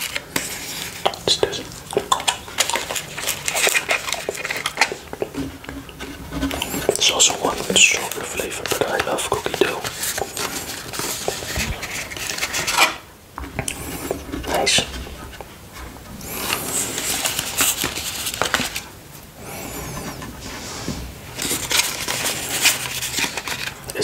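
Thin plastic packaging tray crinkling and clicking as mochi ice cream balls are pushed out of its moulded cups, with soft knocks as they are set on a wooden board.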